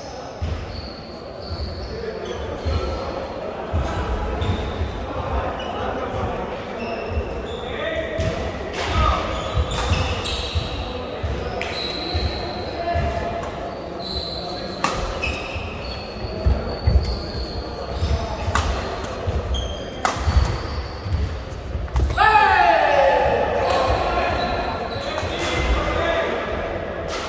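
Badminton doubles rally on a sports-hall court: rackets striking the shuttlecock in repeated sharp cracks, with short high squeaks of shoes on the floor, all echoing in the hall. Near the end a loud drawn-out shout falls in pitch.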